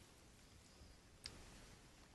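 Near silence, room tone, with a single faint click a little over a second in.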